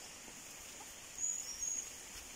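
A bird giving two or three short, high-pitched whistled chirps a little past a second in, over a steady high-pitched drone of forest insects.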